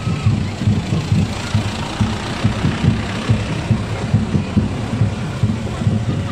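Motor vehicle engine idling close by, a steady low throbbing rumble.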